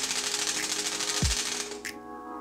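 A split-flap display's flaps clattering as its modules flip rapidly through characters to show a new count, a fast dense ticking that stops near the end. Background music runs underneath.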